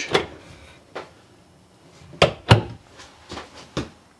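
A bathroom cabinet door being opened and handled: a series of separate clicks and knocks from the door and its catch, the loudest two close together a little past halfway.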